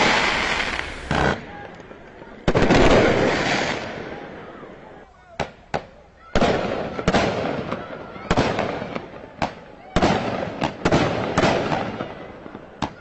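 Fireworks going off: a series of sharp bangs and bursts that each ring out briefly. A large burst comes about two and a half seconds in, and from about six seconds on the bangs come thick and fast.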